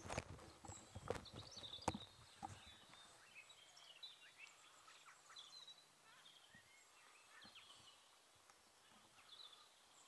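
Faint birdsong, short chirps and trills repeating throughout, on a quiet outdoor background. A few soft knocks sound in the first two seconds or so.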